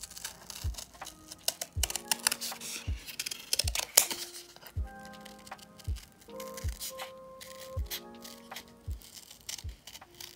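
Scissors cutting through thin brown cardboard in repeated short, crisp snips. Under them runs background music with held notes and a soft beat about once a second.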